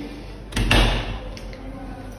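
Built-in kitchen dishwasher's front door knocking shut: a quick double clunk with a low thud about half a second in, then fading.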